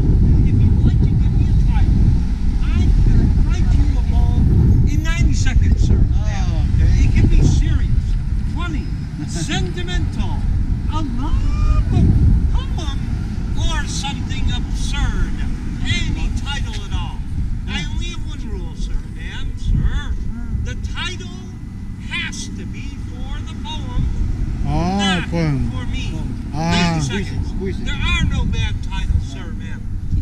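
A steady low rumble, heaviest in the first half, with people's voices and chatter in the background.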